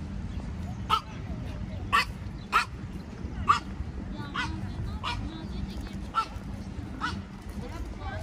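A small dog yapping: about eight short, sharp barks roughly a second apart, over a steady low hum.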